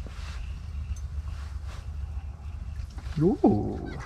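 A man's drawn-out "ooh" about three seconds in, sweeping up in pitch and then back down, over a steady low rumble.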